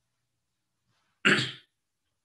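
A pause in a man's lecture speech, then a single short spoken word about a second in.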